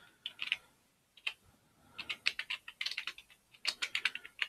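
Computer keyboard keys typed: a few scattered keystrokes, then a quicker run of clicks in the second half as a terminal command is typed.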